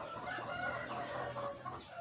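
A rooster crowing, faint, one drawn-out call lasting about a second and a half.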